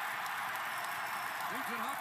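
Ice hockey arena crowd cheering steadily while two players fight on the ice.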